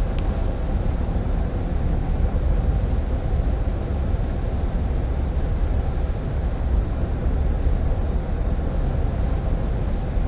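Steady low rumble of a moving vehicle heard from inside, even throughout, with a brief click just after the start.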